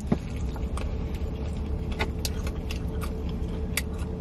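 Steady low hum inside a car's cabin with a faint steady tone, broken by a few short clicks and crunches from people eating fried chicken.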